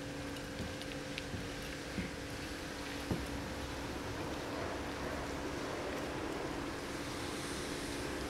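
Steady outdoor background noise, like wind, with a faint constant hum and a few light clicks.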